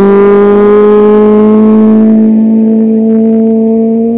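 Rally car engine just after it has passed, holding one steady note with a stack of even overtones, loud throughout and fading only slightly near the end.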